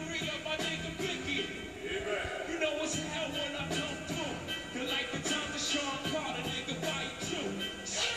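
Hip-hop music with a man rapping over a drum beat, played back through a television's speakers.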